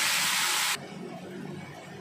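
Loud sizzling of a wet ginger, garlic, onion and tomato paste hitting hot mustard oil in a kadhai, a steady hiss that cuts off abruptly under a second in.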